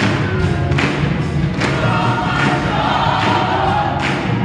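Gospel choir singing, with hand claps on a steady beat a little under a second apart.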